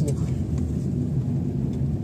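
Car engine and road noise heard from inside the cabin while driving slowly: a steady low rumble.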